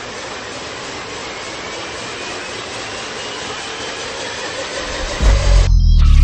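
Sound design from a Dolby logo trailer: a steady rushing noise with faint rising tones in it swells slowly. About five seconds in, a very loud deep bass rumble comes in and the rush cuts off.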